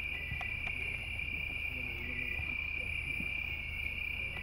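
Crickets chirring steadily at night: one unbroken high-pitched drone, over a low steady hum.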